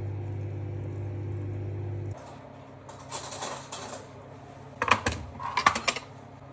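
A steady electrical hum that cuts off suddenly about two seconds in. It is followed by rustling and then a quick run of sharp clinks and knocks of a metal spoon against a ceramic bowl near the end.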